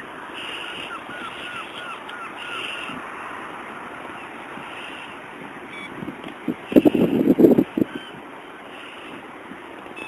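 Wind buffeting the microphone as a steady rushing noise. A quick run of about six short calls sounds early on. About seven seconds in comes a loud cluster of knocks and rustling lasting about a second.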